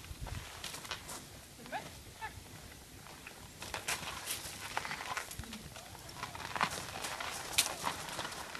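A pony's hooves stepping: irregular knocks and scuffs that grow busier from about halfway, with one sharper knock near the end.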